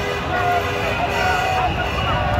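Car horns honking in long held notes, two or three overlapping, over a dense crowd of voices and traffic noise in a street celebration.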